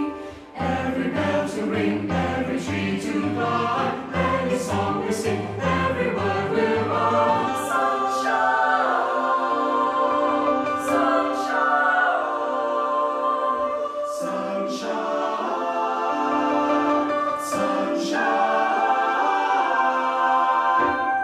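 Mixed chamber choir singing in close harmony over a piano. At first the piano plays repeated accented chords with a low bass line. The piano then drops away, and the voices hold long chords on 'Sunshine', with notated pitch slides in the upper parts.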